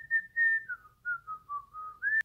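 A woman whistling a short tune to herself: about eight clear notes, the first few higher, then stepping down lower in the second half.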